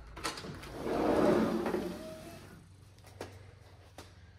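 Sliding glass patio door rolling open along its track: a rumble that swells and fades over about a second and a half, with a click near the start and another about three seconds in.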